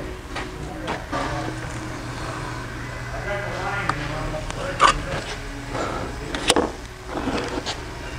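A square steel tube and hand tools being handled on a wooden workbench, with a couple of sharp knocks near the middle, over faint talk and a low steady hum.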